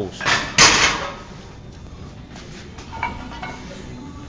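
A single sharp clack about half a second in, wrapped in a brief rush of noise, then steady low room background.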